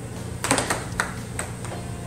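Air hockey mallets and puck clacking: a quick run of sharp plastic knocks from about half a second in, with more around one second and just before halfway through, over a steady low hum.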